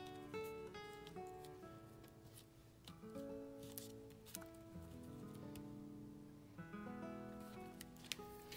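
Quiet background music: a slow run of held notes that change about every half second.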